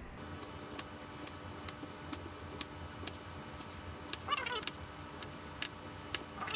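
Kitchen knife cutting a zucchini into rounds on a plastic cutting board: each stroke ends in a sharp knock on the board, evenly, about twice a second.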